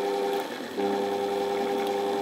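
Ex-treadmill DC motor running at low speed off an SCR speed controller: a steady electrical hum. It dips briefly about half a second in, then returns.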